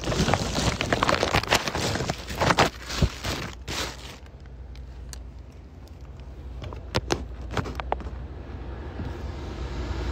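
Handling noise from a phone being moved close to the microphone: dense rustling, scraping and clicking for about four seconds. It then settles into a low steady car-cabin hum, with a few sharp clicks around seven seconds in.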